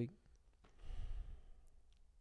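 A person's soft exhaled breath close to a studio microphone, about a second in, in an otherwise quiet room.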